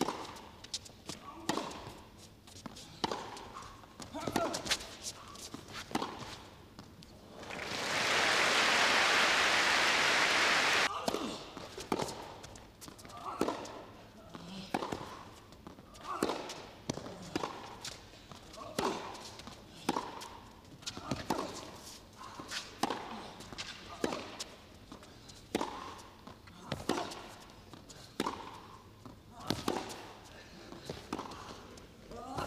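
Tennis rallies on an indoor carpet court, with sharp racket-on-ball hits and bounces about once a second. A burst of audience applause lasting about three seconds comes in about eight seconds in.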